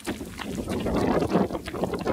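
Wind buffeting the microphone in uneven gusts with a low rumble, while footsteps crunch faintly on a gravel path.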